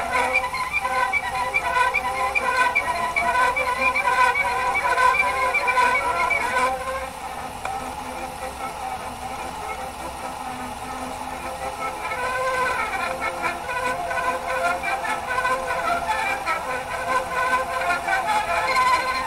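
Music from a gramophone record played acoustically through a homebrew soundbox and horn on a motor-driven gramophone, with the thin, middle-heavy sound of acoustic playback. The music turns softer about seven seconds in and builds back up after about twelve.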